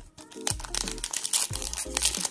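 A foil 2021-22 Bowman U basketball card pack crinkling as it is torn open by hand, starting about half a second in. Background music plays underneath.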